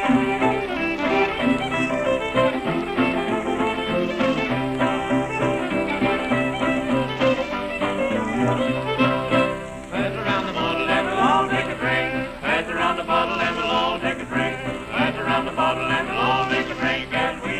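Old-time string band on a late-1920s 78 rpm record playing an instrumental opening, fiddle leading over guitar and banjo. About ten seconds in the sound grows busier, with sliding notes.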